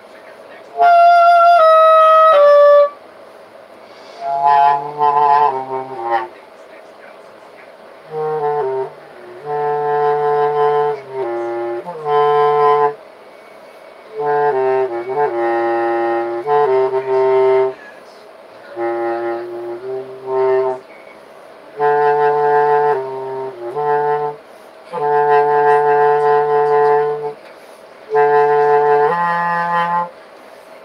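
Bass clarinet playing short improvised phrases of low notes that step up and down within a five-note range, with brief pauses between phrases. About a second in, three loud higher notes step down one after another.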